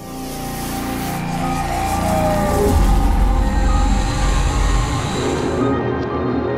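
Intro sting of electronic music and sound design: a rushing swell with a deep rumble, loudest in the middle, over held steady tones. The rushing hiss cuts off sharply near the end, leaving the sustained ambient tones.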